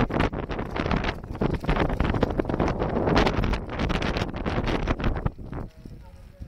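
Wind buffeting the microphone in loud, gusty rushes that die down near the end.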